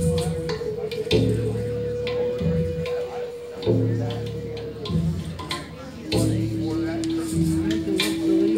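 Native American style flute playing a slow melody of long held notes, one of them wavering a little, stepping down to a lower held note near the end. Underneath it, a backing accompaniment of low chords changes every couple of seconds, with light percussive ticks.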